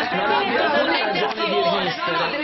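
Several voices talking at once, crossing over one another in a heated exchange.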